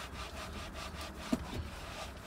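Microfiber towel rubbing back and forth over a car's interior door panel in quick, repeated strokes, with one short knock about a second in.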